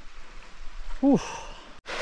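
A man's breathy "whew", falling in pitch, about a second in. Just before the end, after an abrupt cut, the steady rush of a small waterfall into a pool starts.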